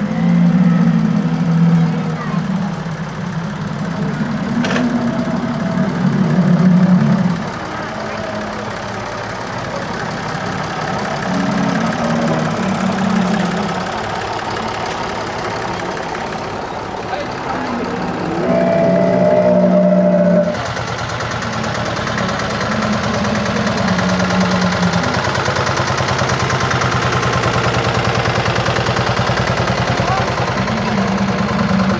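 An old tractor's engine running as it tows a flower float along the street, with people talking around it. The sound changes abruptly about two-thirds of the way through.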